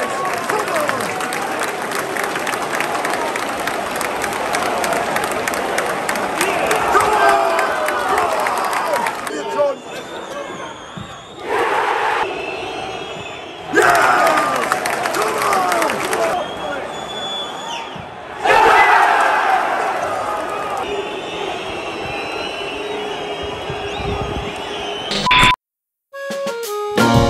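Football stadium crowd during a penalty shootout: a steady din of shouting and chanting, broken by sudden loud roars as penalties are taken, about a second in, around 12 and 14 seconds in, and again near 19 seconds. Near the end a short electronic beep, then the sound cuts out suddenly.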